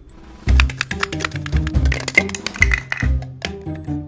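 Background music with a bass line, over rapid, irregular clicking and rattling: a hard-boiled egg being shaken inside a lidded plastic jar to crack its shell.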